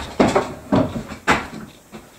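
A new glass-panel door being handled and opened: three clunks of the latch and hardware about half a second apart, then a fainter knock near the end.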